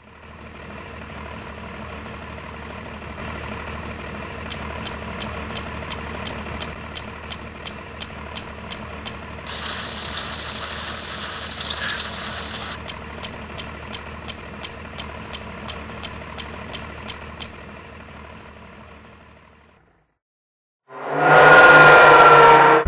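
A machine running with a steady hum and a regular clicking of about three clicks a second, with a denser stretch of clatter and high beeps in the middle; it fades out, and after a short pause a much louder pitched sound breaks in near the end.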